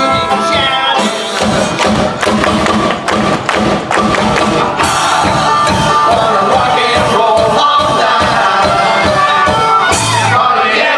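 A bluegrass band playing live, with banjo, upright bass, fiddle, guitars and a drum kit keeping a steady beat. A sung line trails off in the first second.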